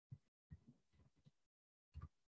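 Near silence, broken by a few faint, dull low thuds: one just after the start, a short cluster in the middle, and one at the end.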